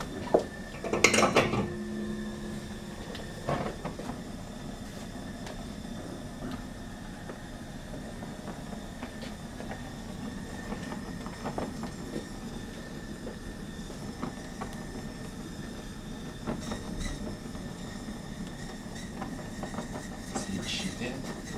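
Gas blowtorch flame burning steadily as it heats a heat-shrink sleeve on a cable joint, with a clatter about a second in and a smaller knock a few seconds later.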